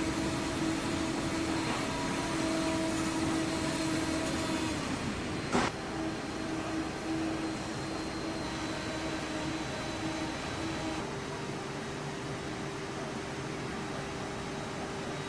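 Steady hum of factory machinery with a steady-pitched whine that shifts pitch partway through, and one sharp click about five and a half seconds in.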